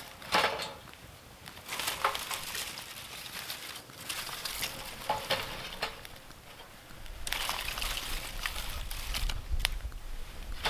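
Dry twigs and brush rustling and crunching in several bursts as they are piled onto a small wood fire in a stainless steel folding fire pit, with a sharp snap near the end.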